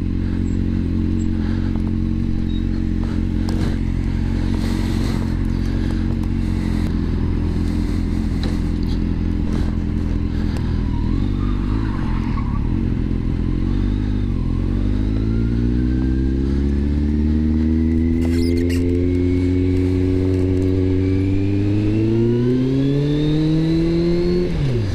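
Kawasaki Z750R's inline-four motorcycle engine idling steadily, then the bike pulls away about halfway through. The engine note rises steadily in pitch as it accelerates.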